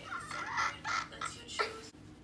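A teenage girl's excited vocal cries and shouting, several short high calls with no clear words.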